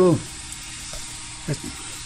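Steady background hiss with no distinct event, under a pause in speech.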